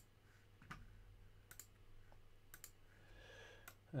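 Faint computer mouse clicks, about one a second, some as quick pairs, over a low steady room hum.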